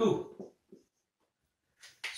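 Marker pen writing on a whiteboard in a few faint short strokes, following a man's spoken word, then near silence in a small room.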